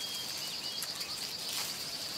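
Field ambience: a steady, high-pitched insect drone over a soft background hiss.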